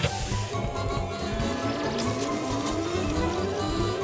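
Cartoon background music with a steady beat, over a machine sound effect that rises slowly in pitch for about three seconds. There is a sharp hit at the start and another about two seconds in.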